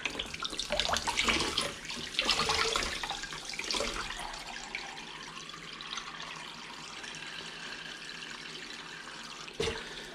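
Kitchen tap running into a water-filled bowl in a stainless steel sink, splashing over hog sausage casings as the salt is rinsed out of them. The splashing is choppy for the first few seconds, then settles into a steady flow.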